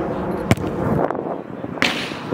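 A football kicked on an artificial-turf pitch: one sharp thud of the kick about half a second in, then a second sharp ball impact near the end.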